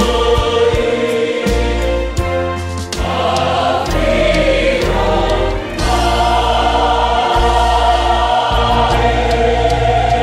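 Church choir singing a gospel hymn in parts over instrumental backing, with a bass line and light, regular percussion ticks.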